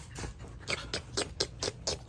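Australian Shepherd panting, quick rhythmic breaths about four or five a second.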